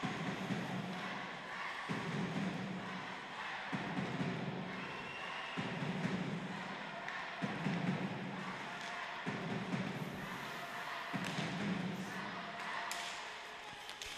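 Hockey arena crowd noise with a low thumping that repeats evenly about every two seconds, over a steady hiss of the crowd and rink.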